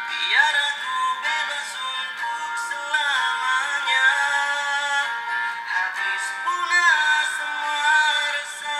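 A Malay pop ballad: a singing voice carrying the melody over backing music.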